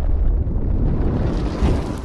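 Fire-burst sound effect: a loud, deep rumbling noise of flames that starts fading near the end.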